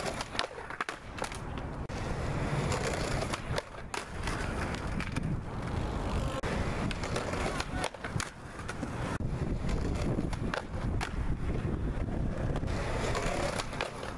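Skateboard wheels rolling on concrete, with many sharp clacks of the board striking the ground.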